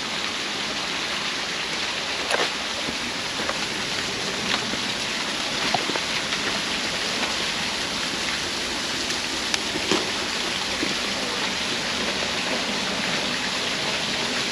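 Creek water rushing steadily through a stone tunnel, with a few light knocks scattered through it.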